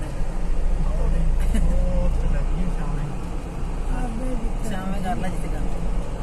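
Indistinct talking in the background over a steady low rumble.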